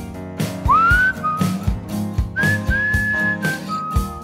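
Whistled melody over a band backing of drums and guitar. The whistle swoops up into a high note about half a second in, then holds a few long notes, stepping down near the end.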